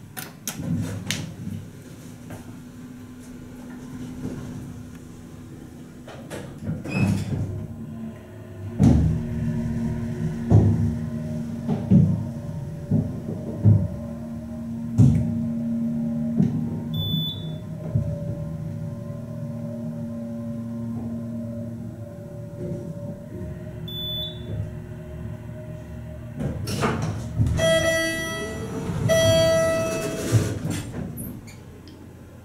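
Modernized Long hydraulic elevator travelling up: a steady hum from the hydraulic pump motor, with knocks and rattles from the car and doors. Near the end, a two-stroke arrival chime rings as the doors open at the floor.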